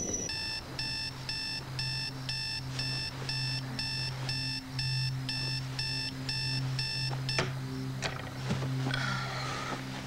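Electronic alarm clock beeping, about two beeps a second, each beep a cluster of high tones. The beeping stops suddenly with a click about seven seconds in, over a low steady hum of background music.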